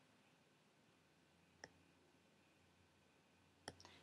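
Near silence, with a few faint clicks: one about a second and a half in, and two close together near the end.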